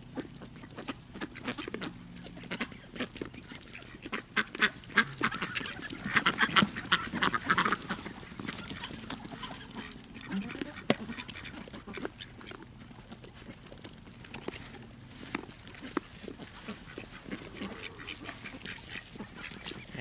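Ducks quacking, with a run of calls about six to eight seconds in, over many small crunching clicks of animals chewing corn on the cob.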